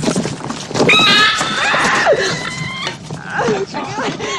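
Film soundtrack of people screaming and shouting in panic. A long, high-pitched scream starts about a second in and is held steadily for about two seconds, with shorter cries around it.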